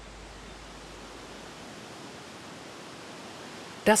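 Steady, even rushing outdoor ambience of an alpine meadow, fairly quiet, with a low hum underneath that drops away about halfway through.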